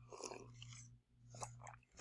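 Near silence: a faint steady hum with two soft, brief noises, one just after the start and one past the middle.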